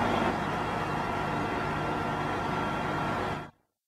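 Steady outdoor background noise with a faint low hum, cut off abruptly into silence shortly before the end.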